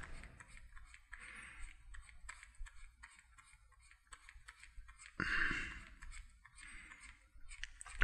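Quiet room tone with faint, scattered small clicks, and one brief soft rush of noise a little after five seconds in.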